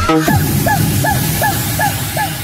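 Electronic dance music from a Chinese non-stop club remix mix. The kick drum drops out just after the start, leaving short repeated synth notes about four a second over a low bass line.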